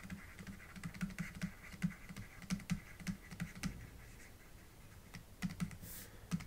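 A pen stylus tapping and scratching on a tablet surface while writing by hand. It makes a run of faint, irregular clicks, thins out about four seconds in, and picks up again with a few clicks near the end.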